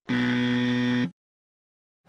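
A buzzer sound effect: one loud, flat buzz lasting about a second, then it cuts off.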